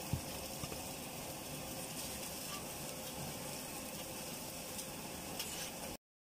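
Steady sizzling hiss from a street burger stall's griddle, with a soft knock right at the start and a few faint clicks as a foam takeaway box is handled. The sound cuts off abruptly just before the end.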